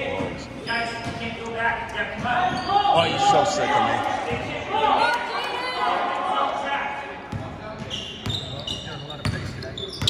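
Basketball bouncing on a hardwood gym floor and sneakers squeaking during play, under spectators' and coaches' voices and shouts echoing in the hall. The voices are loudest in the first several seconds; near the end, sharp ball knocks and short high squeaks stand out.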